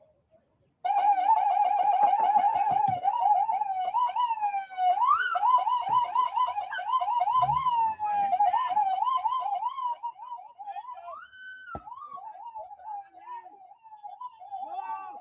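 Police siren in a rapid yelp, its pitch warbling quickly up and down. It starts about a second in, swoops up once in the middle and briefly holds a higher note, and grows quieter in the last few seconds.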